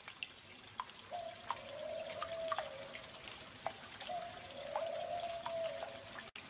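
Water dripping in scattered, irregular drops, with a held mid-pitched tone sounding twice, each time for about a second and a half and sagging in pitch at its end.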